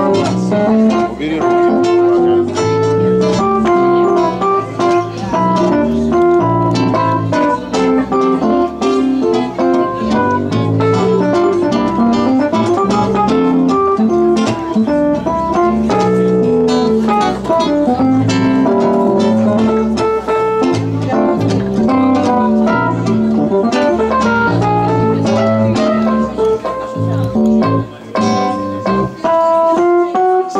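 Acoustic guitar and an electronic keyboard with an organ-like sound playing together: a busy stream of plucked guitar notes over keyboard chords.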